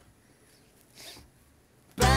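Quiet room tone with one brief, soft swish about a second in.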